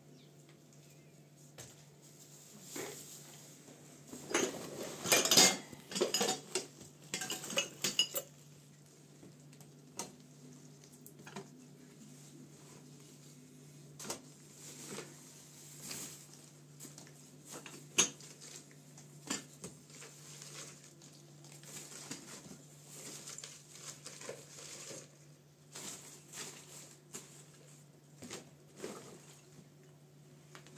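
Dishes and food containers clattering and clinking as they are handled and packed into a bag, with a dense burst of clatter a few seconds in and then scattered single clinks and knocks.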